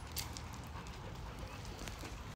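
Faint low rumble with a few light clicks and crunches of steps on gravel.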